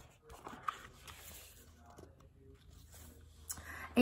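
Faint paper rustling and handling as a picture book's page is turned, with a few soft taps.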